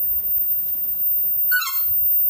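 Noisy friarbird giving one short call, falling slightly in pitch, about a second and a half in, over a steady low background noise.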